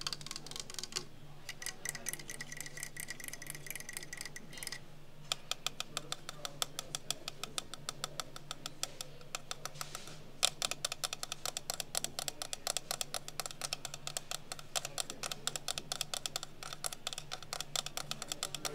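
Fast tapping of long acrylic fingernails, first on a wooden clock case and from about halfway on the face of a Baby Ben clock set in it. It makes quick runs of sharp clicks with brief pauses, over a steady low hum.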